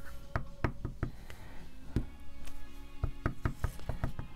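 A clear acrylic stamp block with a rubber stamp mounted on it, tapped repeatedly against an ink pad to ink it: about ten sharp, irregular knocks. Soft background music runs underneath.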